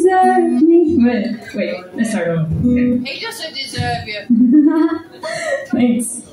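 A woman's voice at the microphone over acoustic guitar: a held sung note at the start, then talking.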